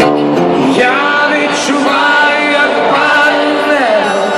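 Live rock ballad played over a stadium sound system and heard from the stands: a male voice singing a melody over guitar.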